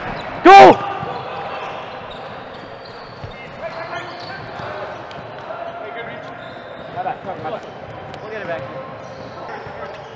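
A short, very loud yell right into a player's body mic about half a second in, then the echoing sound of an indoor volleyball game: players' voices and calls, and scattered thuds of the ball being played.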